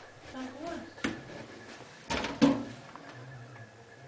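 A mirrored bathroom medicine cabinet door being opened: a click about a second in and two sharper knocks just after two seconds, with faint murmuring voices.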